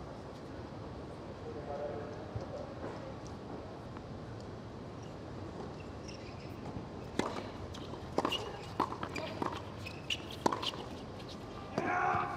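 Tennis doubles rally: a series of sharp racket-on-ball hits about a second apart in the second half, over a steady background of the outdoor court and faint voices.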